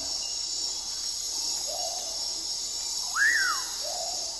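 Night-time forest ambience: a steady high insect chorus, with a few short animal calls over it, the loudest a single call that rises and falls in pitch a little after three seconds in.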